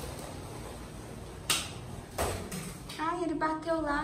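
A low rustle, then two sharp knocks about two-thirds of a second apart, then a child's voice exclaiming near the end.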